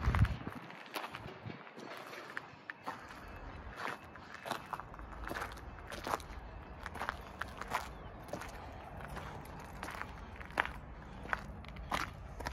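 Footsteps of a person walking on the ground outdoors, heard as a string of short, irregular clicks, about one or two a second.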